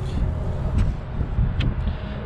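Uneven low rumble of wind buffeting the microphone, with a couple of faint clicks.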